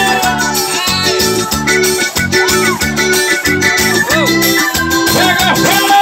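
Live band dance music played loud through a PA, led by electronic keyboard over a steady pulsing bass beat, about two beats a second.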